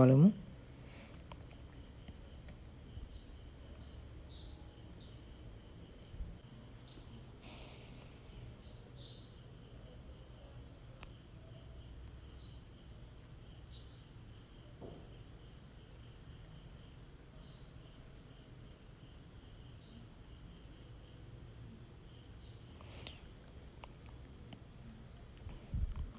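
Steady high-pitched trill of insects in the background, with a few faint clicks.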